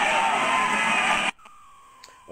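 Crowd of people shouting and wailing at once, a dense jumble of voices, cutting off abruptly a little over a second in and leaving only a faint steady whine.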